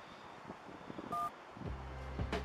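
A single short touch-tone phone keypad beep, two tones sounding together, a little over a second in, over faint outdoor background noise. Near the end a low, steady music bed comes in.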